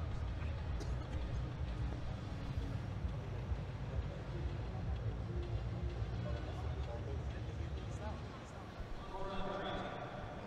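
Velodrome background sound: a low, steady rumble with faint voices, which come back more clearly near the end.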